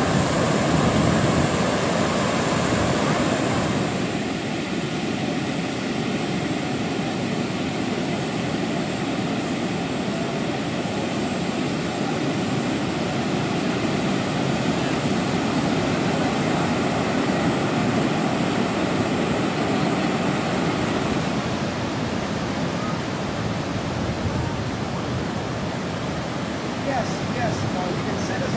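Steady rushing noise of ocean surf breaking and washing up the beach, dropping a little in level about four seconds in.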